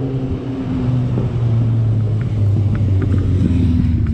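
A vehicle engine running steadily with a low drone and road noise while moving along a street; the drone eases slightly lower in pitch in the second half.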